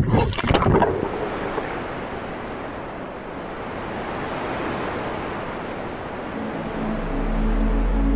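A steady rushing noise of waves on open water, with a few sharp knocks in the first second. Electronic music with a deep bass note comes in near the end.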